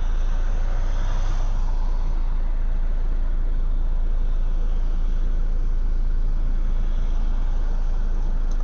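Steady low rumble of road traffic and car engines, swelling slightly about a second in.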